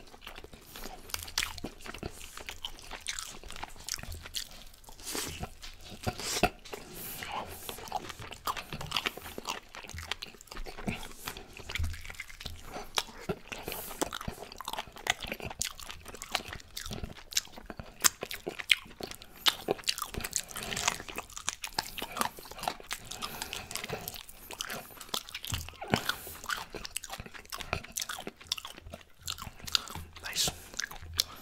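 Open-mouth chewing and lip smacking on baked chicken, close to the microphone: a dense, irregular run of sharp mouth clicks and bites.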